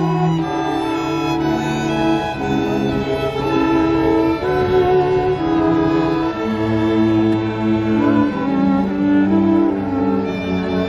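String orchestra of violins and cellos playing a slow passage of long held notes in several parts over a low bass line.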